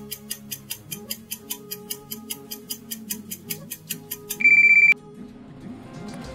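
Countdown-timer sound effect: rapid clock ticking, about four to five ticks a second, over soft background music, ending a little past four seconds in with a loud electronic beep about half a second long that signals time is up.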